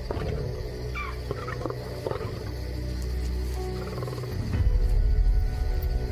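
Adolescent lions growling low over a small cub, the growls loudest just past halfway, with a few short high cries from the cub early on.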